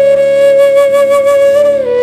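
Flute melody holding one long steady note, then ornamenting into a few quick note changes near the end, over a steady low accompaniment.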